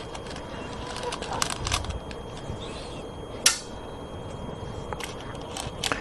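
Go stones clicking against each other in a wooden bowl as fingers pick through them, with a louder single click about three and a half seconds in and a run of small clicks near the end.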